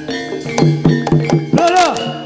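Live Javanese jaranan gamelan music: drum strokes about four a second over steady ringing metallophone and gong tones, with a pitch-bending vocal phrase arching up and down near the end.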